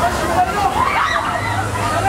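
Bumper-car ride running: riders' voices and shouts over a steady, noisy rumble from the track.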